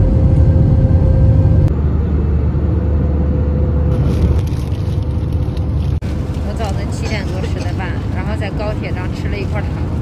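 Loud steady rumble and roar of a passenger jet's engines heard from inside the cabin, with a steady hum over it, loudest in the first couple of seconds. From about six seconds in, a woman talks over the continuing cabin drone.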